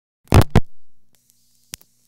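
Telephone relays in a No. 1 Crossbar incoming trunk clicking twice in quick succession as the RC relay operates to cut ringing through to the line. A faint steady hiss with a low hum then comes on, the noise of the tone plant that supplies the ring signal, and a single further click sounds near the end.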